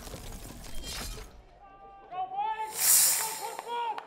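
A short hissing burst, about half a second long and the loudest thing here, comes about three seconds in, like a swoosh sound effect laid over an edited title card. Short, distant-sounding voices call out just before it and again near the end.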